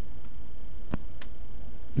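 Steady low background hum with a few faint clicks around the middle.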